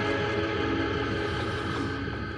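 Background music from the drama's score: a steady, sustained chord held without a break.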